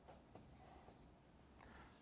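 Dry-erase marker writing on a whiteboard: a few short, faint strokes.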